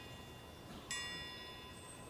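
Faint, high-pitched metal chimes ringing. A new stroke sounds about a second in, and each ringing note dies away slowly.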